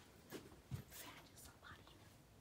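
Near silence: a few faint taps of footsteps as someone creeps across the room, and a brief faint whisper near the end.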